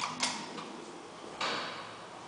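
Sharp mechanical clicks as the landing call button of an old Flohrs traction lift is pressed. About a second and a half later a single louder clack comes from the lift's works.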